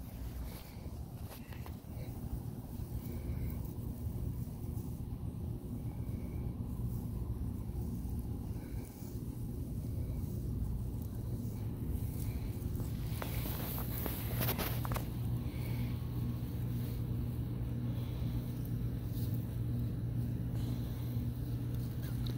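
A steady low mechanical hum, with a few faint short chirps early on and a brief patch of crackling rustle about two-thirds of the way through.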